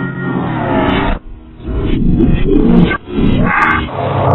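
Slowed-down, pitch-shifted and distorted audio of a production-company logo sequence. It is a low, growl-like pitched sound that bends up and down, breaking off briefly twice.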